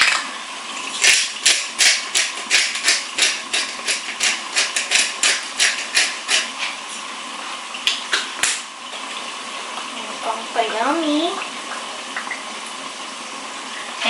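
Hand-twisted spice grinder cracking seasoning into a cooking pot: a quick, even run of crisp clicks, about three a second, that stops a little past the middle.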